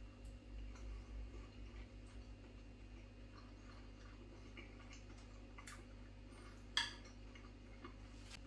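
A man chewing a mouthful of curry and rice in a quiet room, with a few faint irregular clicks of cutlery on a plate, the sharpest about seven seconds in.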